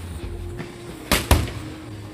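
Two quick punches from boxing gloves smacking into focus mitts, about a fifth of a second apart, a little over a second in, over background music.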